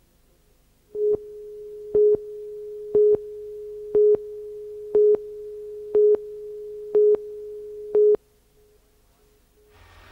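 Videotape countdown leader tone: a steady tone with a louder beep on the same pitch once a second, eight beeps in all, starting about a second in and stopping about eight seconds in.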